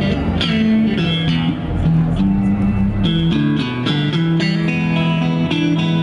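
Electric blues guitar played through a Burriss Shadow 2x10 amp, an instrumental passage of held notes and chords.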